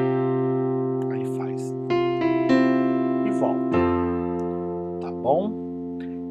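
Digital keyboard with a piano sound, played slowly: sustained chords, the first a C sus4, each struck and left ringing. A new chord comes in about two seconds in and another about two-thirds through, when a deep bass note enters, settling on an F major chord.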